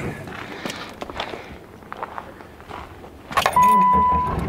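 Car keys jangling and clicking as the ignition key of a Subaru Outback is handled, then near the end the car's engine is started: the sound jumps up suddenly and a steady electronic warning chime begins to beep.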